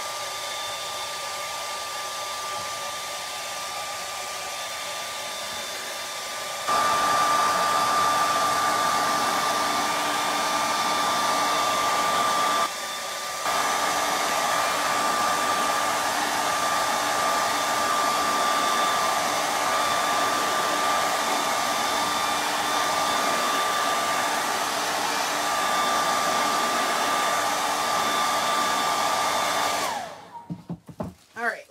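Hand-held hair dryer blowing steadily, with a thin whine over the rush of air. It gets louder about seven seconds in, dips briefly a little before halfway, and is switched off right at the end.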